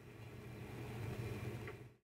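Faint room tone: a low steady hum with light hiss, fading out near the end.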